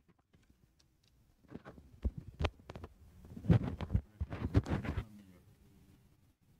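Handling noise from a table microphone being adjusted: knocks, bumps and rubbing picked up by the mic for about three and a half seconds, loudest in the middle.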